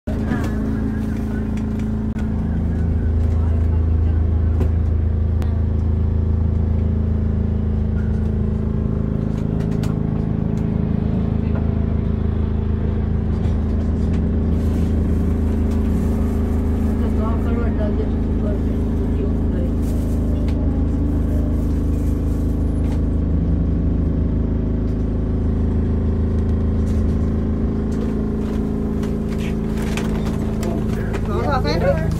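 Angels Flight cable-hauled funicular car running along its inclined rails, heard from inside the wooden car as a steady low drone with a constant hum. Passengers talk faintly underneath.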